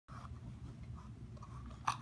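Foil wrapper and cardboard box of a chocolate egg rustling and crinkling as the egg is pulled out, with a short sharp crinkle near the end, over a low steady rumble.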